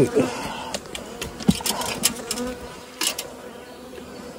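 Honeybees buzzing around their hives as a faint steady hum, with a few sharp clicks and knocks from hands working on the apiary fence.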